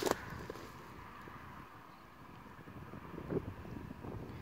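Quiet outdoor background: faint wind on the microphone with a faint steady hum, and a short click right at the start.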